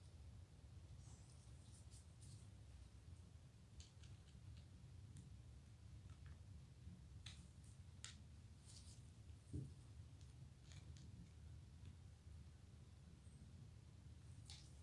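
Faint, scattered metallic clicks and taps of small musket parts being handled as the sling swivel is fitted to the 1851 Springfield's trigger guard, with one soft thump a little past halfway, over near-silent room tone.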